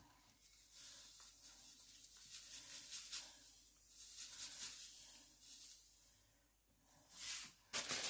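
Granulated sugar being poured into a Thermomix mixing bowl: a faint, soft rustling hiss that comes and goes and stops about six seconds in. A short knock follows near the end.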